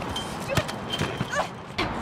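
Three short vocal cries, about half a second in, at about a second and a half, and near the end, with a few sharp knocks, over a steady haze of street noise.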